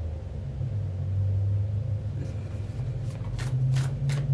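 Tarot cards being handled and shuffled by hand, giving a quick run of crisp paper snaps in the last second or so, over a steady low rumble.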